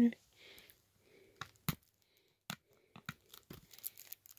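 Fingers picking at the cellophane shrink-wrap on a sealed plastic CD jewel case, trying to get it open: a few sharp clicks and faint crinkling of plastic.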